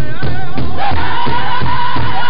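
Powwow drum group singing a women's fancy shawl song: several men's high, wavering voices together over a steady beat on one big drum, about four strokes a second. The singing grows fuller about halfway through.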